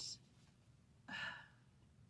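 A woman's breathy sigh about a second in, short and without voice pitch; otherwise faint room tone.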